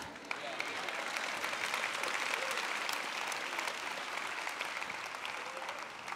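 A large audience applauding, with voices mixed in. The clapping swells in the first second, holds, then slowly dies away toward the end.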